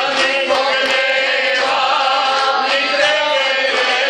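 Several voices singing a folk song together to a Weltmeister piano accordion, the singing and accordion notes held and unbroken.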